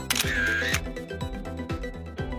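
Upbeat intro music with a steady beat of about two drum hits a second, and a short noisy sound effect lasting about half a second near the start.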